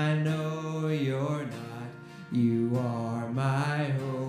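A man singing a slow worship song to his own acoustic guitar, holding long notes, with a brief breath between phrases about two seconds in.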